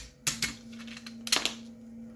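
Small hard parts clicking and scraping as a 3D-printed printer idler with its bearing stack and metal dummy pin is handled and fitted together by hand. There is a short burst of clicking about a quarter second in and another about a second and a third in.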